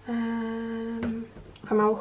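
A woman humming one steady, level-pitched "hmm" for about a second, with a light click about a second in, then a second short hum near the end.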